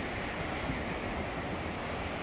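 Steady hiss of North Sea surf breaking on the beach, mixed with wind on the microphone.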